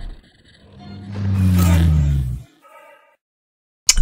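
Intro logo sound effect: a low rumbling swell with a slightly sinking pitch that builds for about a second and a half and cuts off suddenly, followed by a short faint chime.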